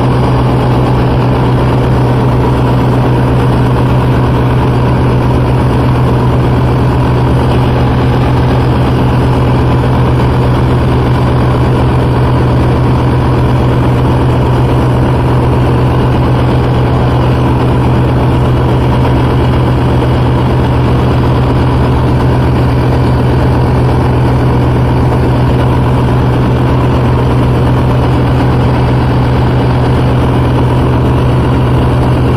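Diesel engine of a boom crane truck running at a steady, constant speed, powering the crane as it hoists a cut section of tree trunk; a loud, unchanging low hum.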